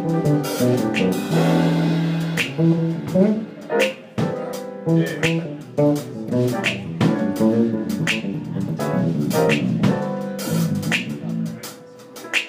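Live jazz combo playing instrumentally. Plucked bass notes move under regular drum kit and cymbal strikes.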